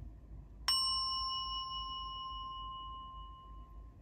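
A single bell-like ding, struck once a little under a second in, ringing out clear and fading slowly over about three seconds.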